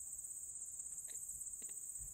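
Steady high-pitched chorus of field insects, with a couple of faint clicks about a second in and shortly after.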